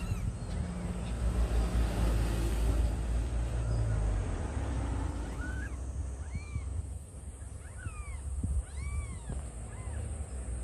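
A cat mewing: about five short calls, each rising and falling in pitch, in the second half. A low rumbling noise in the first few seconds fades out.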